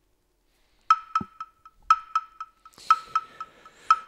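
A short ticking sound cue, like a wood block or clock, starting about a second in. It plays about four mid-pitched ticks a second, and each second begins with a louder tick that the following ones fade away from. This is the kind of cue that marks the switch to the night phase in an online mafia game.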